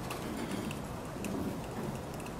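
Room tone of a meeting hall: a steady low hiss and rumble with a few faint ticks.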